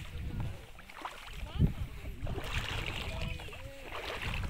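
Wind rumbling on the microphone and gentle lapping of shallow seawater, with faint distant voices.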